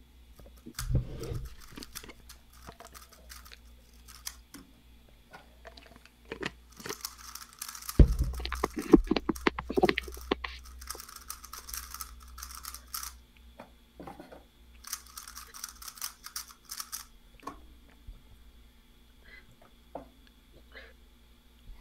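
Plastic speedcube being turned rapidly in two spells of crackly rattling, with scattered clicks and knocks of cubes and cube covers being handled on a table and a loud thump about eight seconds in.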